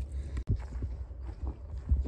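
Low steady wind rumble on the microphone, with a few short knocks or scuffs.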